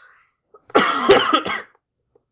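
A person coughing once, a loud, rough burst about a second long, with a sharp click in the middle of it.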